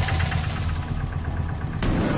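Auto-rickshaw engine idling, a steady low rumble.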